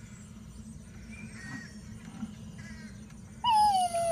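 A young child's high-pitched wail near the end, one long cry that falls steadily in pitch, over a faint quiet background.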